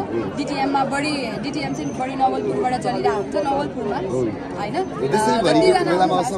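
Speech only: people talking in conversation, with chatter around them.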